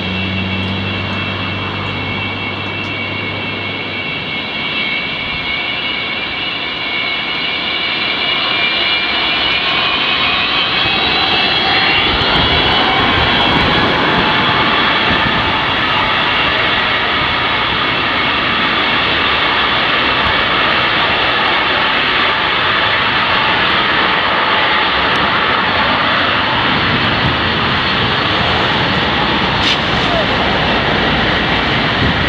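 The four turbofan engines of an Antonov An-124-100M taxiing at low thrust make a steady jet roar with a high whine whose tones shift in pitch as the aircraft turns. It grows louder over the first dozen seconds, then holds.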